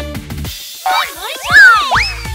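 Children's song backing music stops about half a second in and gives way to cartoon sound effects: a springy boing and quick rising and falling whistle-like pitch glides, the loudest one about a second and a half in.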